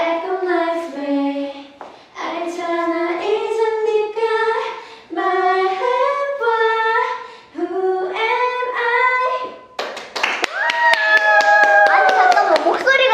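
Female voices singing a cappella in short phrases of held notes. Near the end a burst of hand clapping comes in under one long held high note.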